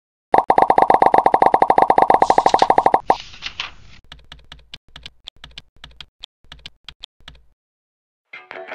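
A rapid, even train of sharp clicks, about a dozen a second, for nearly three seconds, then a brief noisy swish followed by a slower, irregular scatter of clicks that stops shortly before the end.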